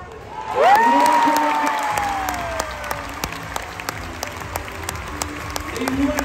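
Large indoor crowd applauding and cheering a clear show-jumping round, with a loud drawn-out cheer starting about half a second in that rises and then slowly falls in pitch. The applause carries on with arena music under it.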